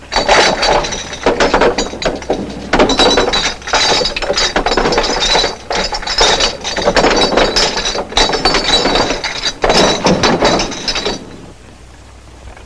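Many glass bottles clinking and rattling against one another in repeated bursts, a second or so each, as racks of bottles are handled; the clatter stops about eleven seconds in.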